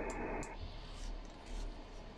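Faint steady hiss with no distinct sound events.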